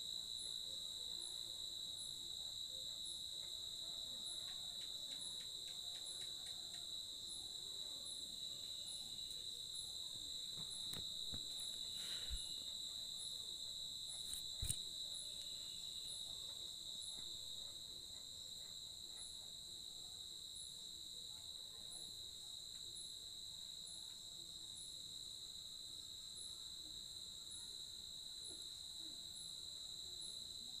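Crickets trilling steadily in a continuous high-pitched chorus, with a fainter ticking call above it about once a second. Two small knocks sound around the middle.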